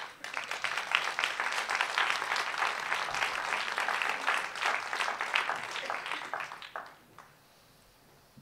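Audience applauding, starting suddenly and dying away after about seven seconds.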